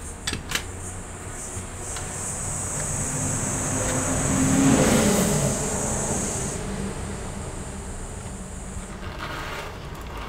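A motor vehicle passing by, swelling to a peak about halfway and fading away, its low note dropping in pitch as it goes past, with a thin high hiss through the middle. A few light clicks come right at the start.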